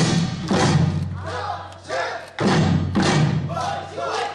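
Buk barrel drums struck with sticks in Jindo drum dance, heavy strokes at the start and again about two and a half seconds in, over traditional Korean accompaniment with a bending melody line.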